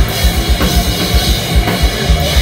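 Live metalcore band playing loud, with the drum kit to the fore: fast, steady bass-drum hits under cymbals and distorted guitar.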